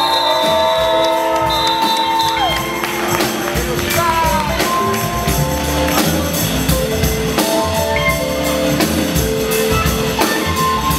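Live jazz and hip-hop band playing an instrumental groove: a drum kit keeps a steady beat under held keyboard chords and bass.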